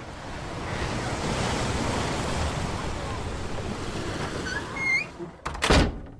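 Ocean surf washing and breaking in a steady rush, with a few short high chirps near the end. Just before the end comes a brief, loud burst of noise.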